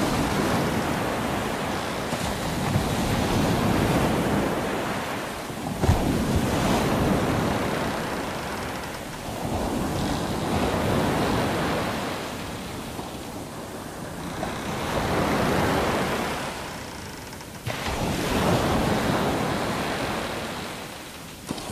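Ocean waves surging and washing, swelling and falling away every three to four seconds, with a sudden rise in level about six seconds in and again near the end.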